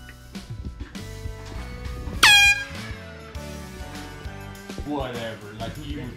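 Background music runs under the clip. About two seconds in comes a sudden, very loud, high-pitched blast that drops sharply in pitch and holds for a moment before cutting off. A voice is heard near the end.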